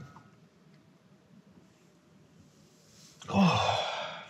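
A faint steady hum, then near the end a loud, breathy human sigh whose pitch falls, lasting about a second.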